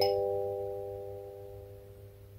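Kalimba's metal tines ringing out on a final rolled chord, the top note plucked right at the start, then all four notes fading slowly together.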